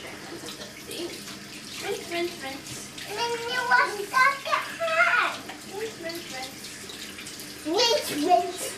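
Bathroom sink tap running steadily while a toddler's hands are washed under it, with wordless voice sounds from a young child in the middle of the stretch.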